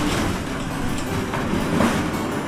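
A steel compound gate rattling and rumbling as it is pushed open, with a car rolling in through it.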